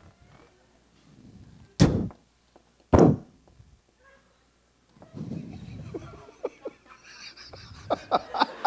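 Two sharp strikes of a toy 'hypnotic hammer' tapped against volunteers' heads, a little over a second apart. Low crowd murmur and a few small clicks follow.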